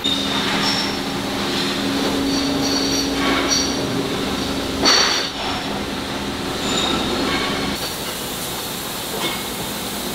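Steady factory machinery running in a bearing plant, with a low hum that cuts off about three quarters of the way through. Brief high metallic rings and clinks from steel bearing rings sound over it, with one sharper clink about halfway.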